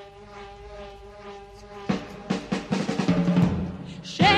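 A pop song's instrumental intro: a soft held chord for about two seconds, then a drum kit comes in with a quick run of snare and bass drum hits, louder, under the band.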